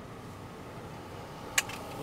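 Steady low background noise inside a truck cab, with one sharp click about one and a half seconds in.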